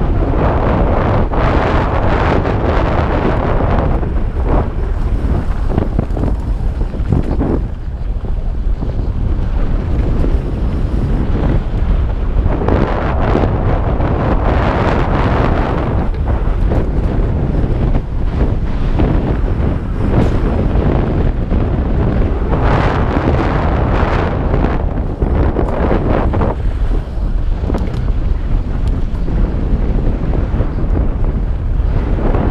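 Wind rushing over the microphone of a chin-mounted GoPro on a mountain bike riding down a dirt singletrack, a heavy steady rumble, with the noise of the tyres on loose dirt swelling louder several times.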